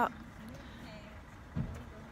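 Faint steady outdoor background noise in a pause between words, with a brief low bump about one and a half seconds in.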